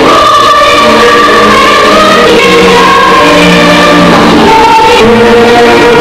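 Music: a song sung by a choir of voices, moving through a melody of held notes at a steady, loud level.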